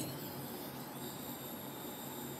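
Faint steady background hiss with a few thin, steady high-pitched whines: room tone during a pause in speech.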